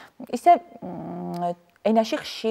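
A woman's voice: a couple of quick syllables, then one sound held steady for nearly a second.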